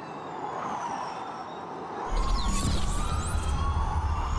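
Formula E electric race cars passing, the high-pitched whine of their electric drivetrains gliding down in pitch. About two seconds in, louder cars pass close by with a deep rumble of tyres on the road and several whines sweeping up and down at once.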